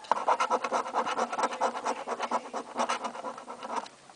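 A coin scraping the latex coating off a paper scratch-off lottery ticket in rapid back-and-forth strokes, stopping just before the end.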